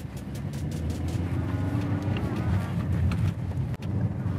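Hyundai Creta driving, heard from inside the cabin: a steady low hum of engine and tyres on a rough road, with a few brief knocks.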